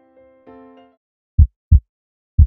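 Soft music ends just under a second in, then a loud heartbeat sound effect: one lub-dub pair of deep thuds about a second and a half in.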